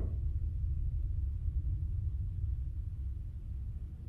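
A low, steady rumble with no other sound over it.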